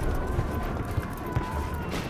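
Battle sound bed of a dramatised war scene: a low rumble with scattered thuds, under faint held musical tones.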